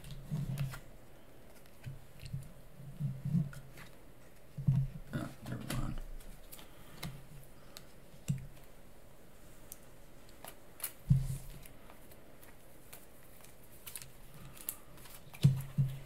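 Game cards and pieces being handled on a tabletop: scattered soft clicks and light knocks, with louder taps about eleven seconds in and near the end.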